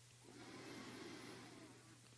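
Near silence: room tone with a faint steady hum and a faint soft swell of noise through the middle.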